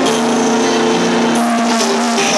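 Live pop ballad sung by a man into a microphone over a backing track, with a long note held steady before the melody moves on near the end.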